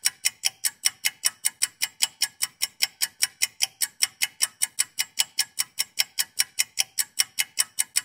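Countdown timer sound effect: a clock ticking fast and evenly, about five ticks a second.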